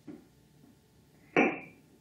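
A single sharp knock about one and a half seconds in, fading quickly, as a small glass spice jar is handled against a wooden mortar while spice is shaken into it.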